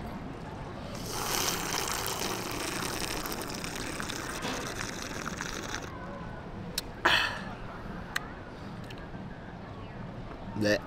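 Cocktail over ice being sipped through a plastic straw: a long, watery slurp that starts about a second in and stops abruptly after about five seconds.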